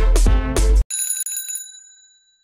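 Intro music with a strong beat cuts off abruptly just under a second in, followed by a single bright bell-like ding that rings out and fades away.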